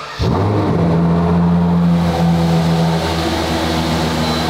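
Ferrari Monza SP2's V12 engine starting up: it fires about a quarter second in and settles into a steady idle.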